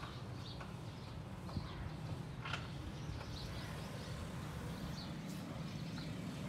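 Faint outdoor street ambience: a steady low rumble with a few short, faint bird chirps and an occasional small click.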